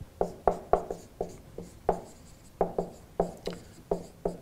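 Marker pen writing on a whiteboard: a quick run of short strokes and taps, with a brief pause a little past halfway.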